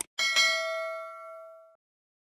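Subscribe-animation sound effect: a click, then a small notification bell dinging twice in quick succession. The ring fades over about a second and a half, then cuts off suddenly.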